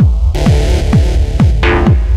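Electronic dance music from a techno DJ mix: a steady four-on-the-floor kick drum, about two beats a second, over deep bass. The highs drop out briefly at the start, and a rising swell builds near the end.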